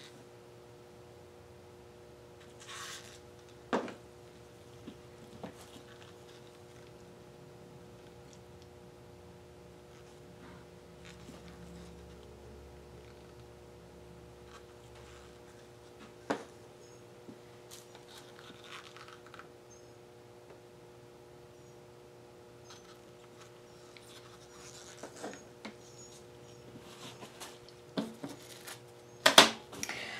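Quiet handling of plastic paint cups and a paper towel while pouring acrylic paint: a few light taps and clicks, the sharpest about sixteen seconds in and several more near the end, with the odd soft scrape. A faint steady hum runs underneath.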